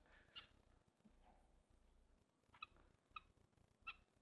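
Near silence, with four faint, short chirps from a bird.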